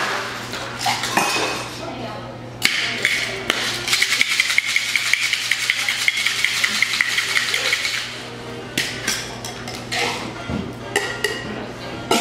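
Ice rattling hard inside a metal cocktail shaker tin: a rapid rhythmic rattle with a ringing metallic edge that starts suddenly a couple of seconds in and lasts about five seconds. Scattered clinks of ice and metal come before it, and a few clinks and knocks after it as the tins are handled.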